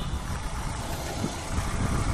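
Chinese-made small motorcycle cruising along a street: a steady engine and road-and-wind noise, with an uneven low rumble and no clear pitch.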